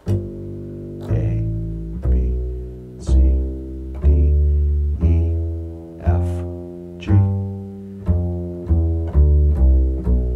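Upright bass played pizzicato, plucking the G mixolydian scale (G A B C D E F) one note at a time. The notes come about once a second, each ringing and fading, and come quicker near the end.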